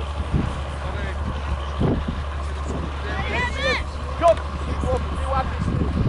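Outdoor football pitch sound: distant voices over a steady low rumble. A high-pitched shouting voice rises and falls about three seconds in, and a short sharp thump comes just after four seconds.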